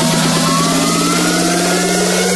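Electronic dance music build-up: a synth sweep rising steadily in pitch over a dense noise wash and a held low bass note, with a fast drum roll fading out in the first half second.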